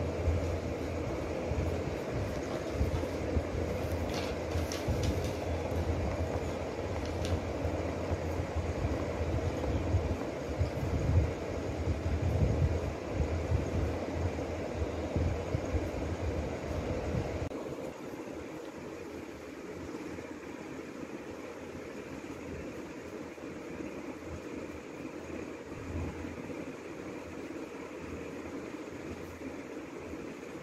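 A steady low rumbling background noise that drops off abruptly partway through and continues more quietly.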